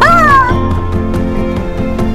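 A person's high-pitched, excited squeal, falling in pitch over about half a second, over background music with sustained notes that carries on alone after it.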